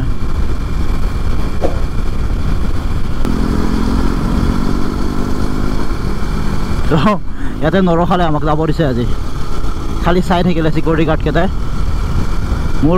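Single-cylinder KTM RC sport motorcycle cruising at steady speed, its engine hum buried under heavy wind rumble on the rider's camera microphone; a steady engine tone comes through in the middle. A man talks over it in the second half.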